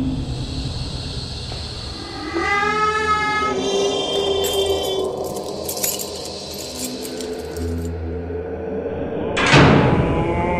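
Sound-installation soundscape: a low drone with a moaning pitched tone a couple of seconds in, then a clatter of high clicks in the middle, and a sudden loud rush of noise near the end.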